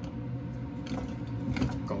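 Fume hood exhaust fan running with a steady hum, just turned up a notch. A few short clicks come about a second in and again around a second and a half.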